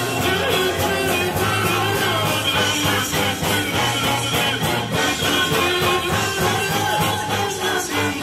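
Live rock band playing, from a mid-1970s recording made on a reel-to-reel tape deck.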